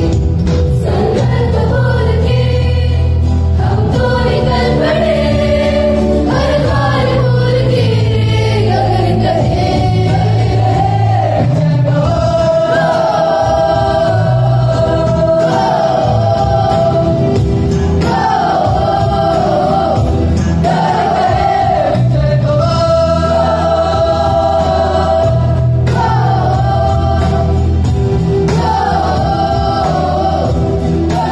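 A choir singing a song with instrumental accompaniment and a steady bass line underneath.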